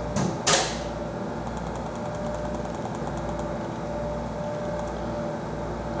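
Computer mouse scroll wheel ticking faintly in quick runs, over a steady low hum. A short loud burst of noise comes about half a second in.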